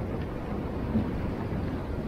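Wind buffeting the microphone outdoors: a steady low rumble with no clear events.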